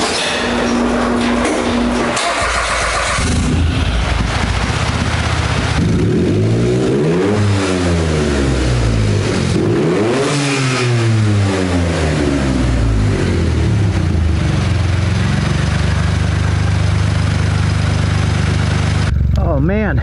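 Turbocharged buggy engine being started, catching about three seconds in, then revved twice with the pitch rising and falling each time, before settling into a steady idle. Near the end the sound cuts abruptly to a different recording.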